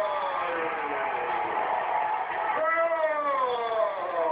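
An excited football commentator's long, drawn-out shouts, each sliding down in pitch, over steady crowd noise: one shout tails off just after the start and a second begins a little past halfway.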